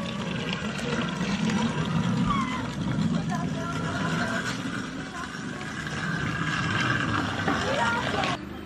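Children's voices, faint and some way off, over a steady rushing noise.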